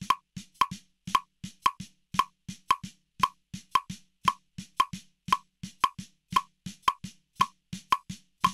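Snare drum struck with wooden drumsticks in a steady run of single strokes, about four a second.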